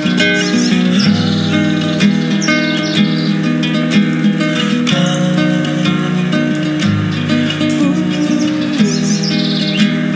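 Acoustic guitar with a capo playing an instrumental passage of plucked, ringing chords. Birds chirp over it a few times: near the start, about two and a half seconds in, and near the end.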